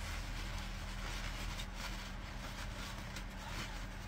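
Steady background hum and hiss, with faint rustling of a paper towel as a small tube of denture adhesive is rubbed dry.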